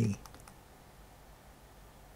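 A few faint clicks of computer keyboard keys in the first half second, as the cursor is moved back along a typed command line.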